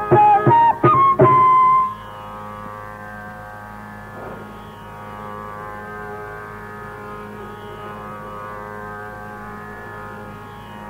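A Carnatic bamboo flute phrase with mridangam strokes for about the first two seconds, ending on a held note. Then the flute and drum stop, and only a steady tambura drone is left sounding.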